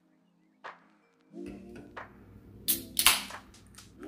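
An aluminium can of sparkling water is cracked open: a sharp click from the pull-tab, then a short hiss of escaping carbonation, a little under three seconds in. Soft background music plays under it.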